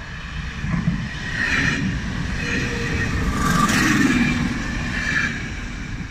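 Ganz-Mavag ŽFBH 411 series electric multiple unit passing close by on its rails. The running noise grows louder to a peak a little past the middle, then fades as the train goes by.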